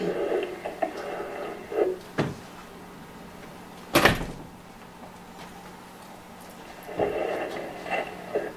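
A single sharp thump about four seconds in, over a faint steady hum, with brief murmuring voices at the start and near the end.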